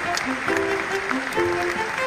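A small orchestra of strings and winds playing, with audience applause over the music.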